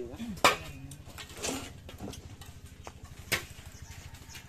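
Steel mason's trowel scraping and tapping cement mortar on concrete hollow blocks, with a sharp knock about half a second in and another near the end.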